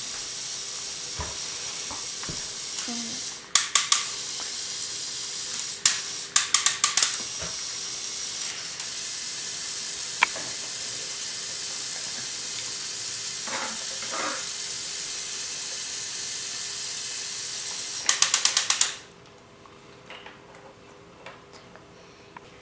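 Battery-powered Lego Technic electric motors running the logging truck's crane with a steady high whine, broken three times by short bursts of rapid clicking. The motors stop about nineteen seconds in, leaving only faint handling knocks.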